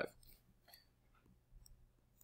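Near silence: room tone with a few faint, light clicks, a stylus tapping on a tablet while writing.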